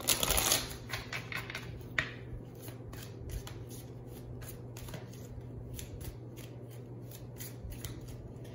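A deck of tarot cards being shuffled by hand: a dense rush of cards at the start, then a run of light clicks and taps as the cards are worked.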